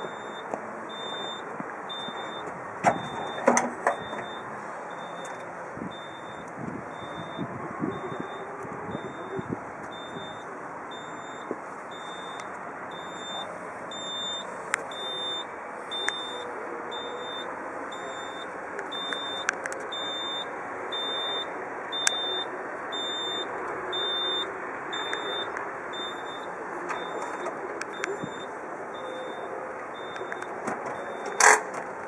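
An electronic warning beeper sounding a high, even beep over and over, roughly every two-thirds of a second, over steady outdoor background noise. A few sharp knocks come about three seconds in.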